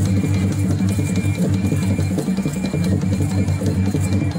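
Music carried by a steady drum beat, with a short high note repeating through it.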